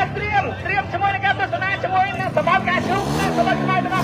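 A motorcycle engine revving, with voices over it. The engine's pitch climbs again near the end.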